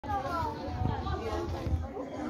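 Schoolchildren's voices chattering and calling over one another, several at once.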